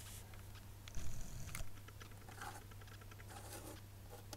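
Handling noise of plastic lip gloss tubes being moved in the fingers: small ticks and rustles, with a louder knocking rustle about a second in, over a steady low hum.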